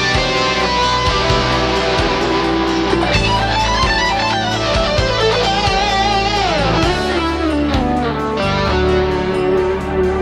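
Instrumental passage of a pop-rock song: electric guitar playing a lead line with bending, gliding notes over full band backing with a steady drum beat.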